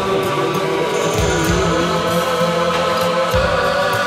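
A 1986 rock song's closing section, with sustained layered tones, a melodic line that slides up and down in pitch, and low bass notes coming in about a second in.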